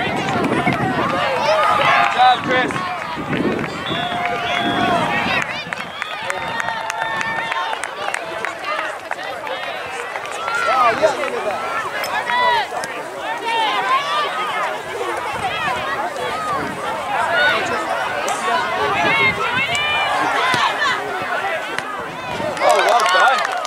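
Overlapping shouts and calls from spectators and players at a youth soccer match, several voices at once with no single clear speaker.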